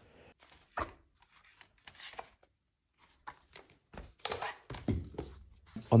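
Hardback notebooks being handled: scattered soft paper rustles and a few light thunks of pages and book covers, busiest near the end.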